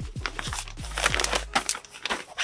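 Frosted plastic zip-lock bag crinkling and rustling in a series of irregular crackles as it is handled and lifted out of a cardboard box.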